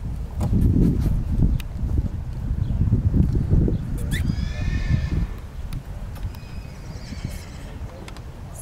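A horse whinnies about four seconds in, one high-pitched call lasting about a second, followed a second later by a fainter call. Low rumbling noise runs underneath through the first half.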